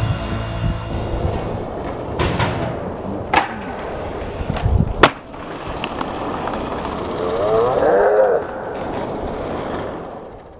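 Streetboard wheels rolling on concrete, with several sharp clacks of the board hitting the ground, the loudest about five seconds in, and a brief wavering squeal near the end.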